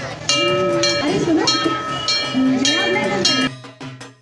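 Large brass temple bell rung by hand, struck several times about a second apart, its ringing tones overlapping. It cuts off suddenly near the end, where a quick, even percussion beat begins.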